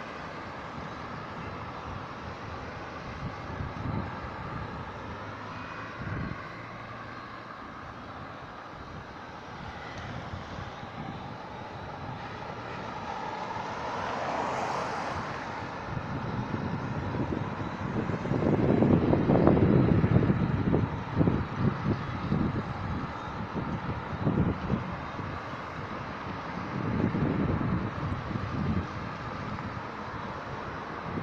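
Road traffic: cars driving round a roundabout and passing one after another, with steady tyre and engine noise. The loudest pass comes about two-thirds of the way through, with a smaller swell near the end.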